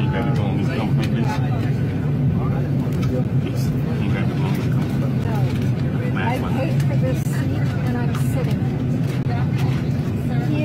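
Steady low hum of an airliner cabin, with people's voices talking over it.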